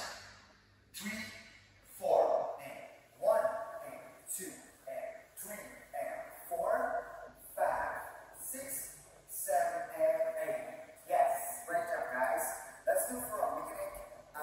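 A man's voice making short rhythmic syllables, scatting or counting the beat of the dance moves.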